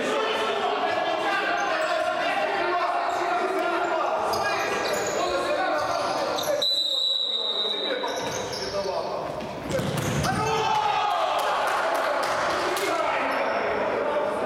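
Futsal being played in a large reverberant sports hall: players' voices calling, with the ball knocking and bouncing on the hard floor. A steady high whistle blast of about a second sounds near the middle, typical of a referee's whistle.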